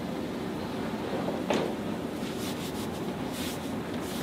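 Chiropractic thrust on the upper back during the patient's exhale: one short sound about a second and a half in, then a quick cluster of light cracks from the thoracic spine joints, over a steady room hiss.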